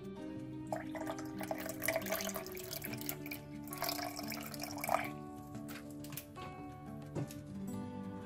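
Water poured from a plastic bottle into a clear plastic container, a splashing pour starting about a second in and stopping about five seconds in, over background guitar music.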